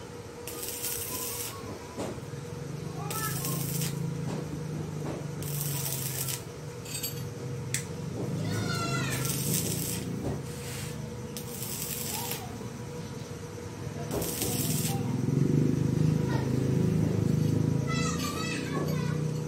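Stick welder arc crackling and hissing in short bursts of about a second, struck and broken again and again as a steel tool is tack-welded, over a steady hum. A cat meows about nine seconds in, and voices murmur in the background.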